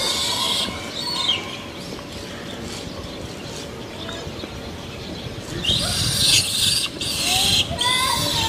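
Infant macaque screaming in distress: a couple of high, arching squeals in the first second, then a louder, harsher bout of screaming about six seconds in that lasts nearly two seconds.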